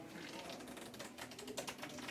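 Playing cards being handled: faint, rapid clicking of card edges as a chosen card is pushed back into the deck.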